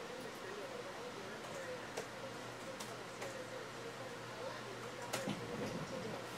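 Quiet room with a low steady hum, a faint wavering voice in the background, and a few light clicks.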